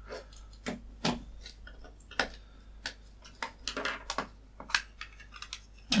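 A small screwdriver and the white plastic case of a plug-in ultrasonic insect repeller being handled on a wooden bench as the case is unscrewed and opened: irregular light clicks and knocks of plastic and metal, several a second at times.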